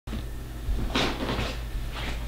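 Household knocks off-screen: a clatter about a second in, then a few softer knocks, over a steady low hum.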